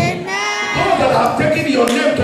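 A man's voice through a microphone, sung rather than spoken, holding one long note that rises in pitch about half a second in.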